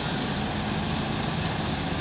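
Steady low hum of a double-decker bus engine idling, over the even noise of a wet city street.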